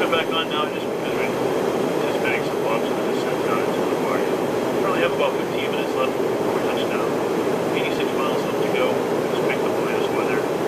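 Steady cabin roar inside a Canadair Regional Jet CRJ900 in flight, from its rear-mounted turbofan engines and the airflow. Indistinct voices come and go over it a few times.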